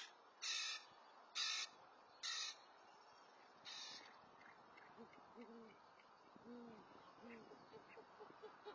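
Great horned owls at the nest: four short, raspy screeches of begging owlets in the first four seconds, then, from about five seconds in, an adult's short, low hoots, faint and repeated.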